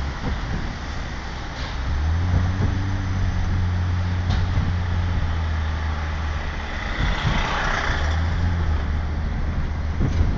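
Bus engine running as the vehicle drives, heard from inside the cabin as a steady low drone. A short rush of hissing noise rises and falls about seven seconds in.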